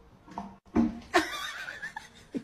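A startled cat yowling: a short cry falling in pitch, then a longer wavering, hissy cry from just past a second in.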